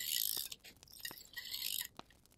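Scissors cutting through a strip of printed scrapbook paper, in two crisp strokes, the second about a second after the first.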